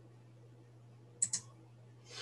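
A quick double click of a computer mouse about a second in, two sharp clicks close together, over a faint steady low hum.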